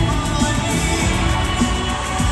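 Live pop band playing in an arena, drums, bass and keys together, recorded on a phone from the crowd.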